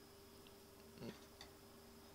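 Near silence: room tone with a faint steady hum, one soft brief sound about a second in and a faint click just after.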